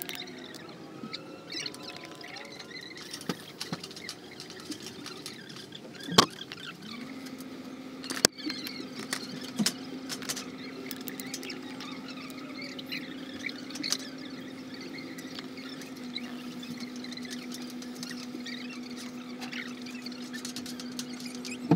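Hand tools working galvanized sheet metal: small scrapes, squeaks and clicks, with two sharp knocks about six and eight seconds in. A steady low hum starts soon after the first knock and runs on.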